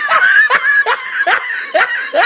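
A woman laughing in short, high-pitched bursts, a little over two a second.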